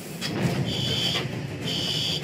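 Fire-suppression system alarm beeping in a haul-truck cab: high-pitched beeps about half a second long, roughly one each second, over a low steady rumble. The beeping is the warning that a heat detector has tripped and the system will soon discharge its extinguishing powder, giving the driver seconds to get out.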